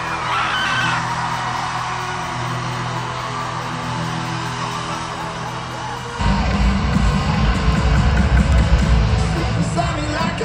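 A live band plays held, sustained chords while a large crowd cheers and screams. About six seconds in, the full band comes in loud with heavy drums and bass.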